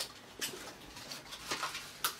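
Faint handling and movement noises in a small room: low rustling with a couple of soft knocks.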